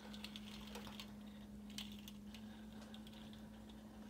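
Faint, light clicks and ticks, scattered and densest in the first couple of seconds, over a steady low hum.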